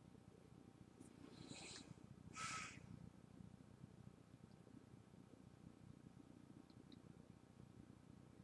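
Near silence: quiet room tone, broken by two faint, brief sounds about one and a half and two and a half seconds in.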